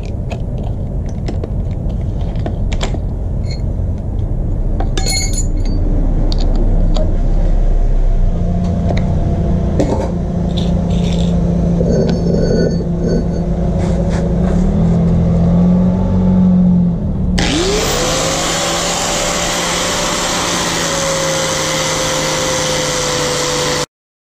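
Low rumble with small clicks and knocks as a disc is changed on an angle grinder. About 17 seconds in, the angle grinder switches on: a loud hiss and a whine that climbs quickly and then holds steady, dipping slightly near the end as the disc starts grinding the steel rail.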